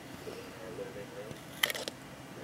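A quick cluster of sharp clicks near the end: metal tongs tapping against a plastic vial.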